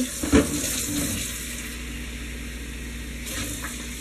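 Water running steadily from a kitchen tap, with a short clatter about half a second in.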